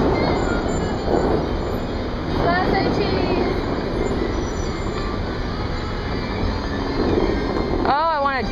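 Steady, loud outdoor city noise, a mix of street traffic and the rushing of large fountain jets, with faint voices about two and a half seconds in.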